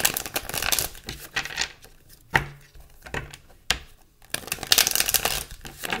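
Tarot cards being riffle-shuffled and bridged by hand on a wooden table: a riffle of flicking card edges at the start, two sharp taps in the middle, and a second, longer riffle about four and a half seconds in.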